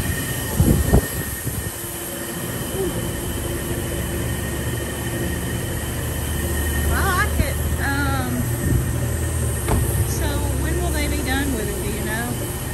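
Steady low rumble of a car service shop's background machinery, with voices in the background and a couple of knocks about a second in.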